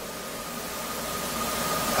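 Pause in a talk: a steady hiss of room tone, with a faint thin steady tone held through most of it.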